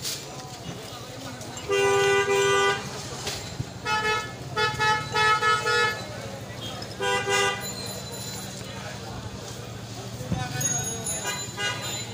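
Vehicle horns honking in street traffic: a loud blast of about a second, then a run of short toots, then another short blast, over a steady low traffic hum.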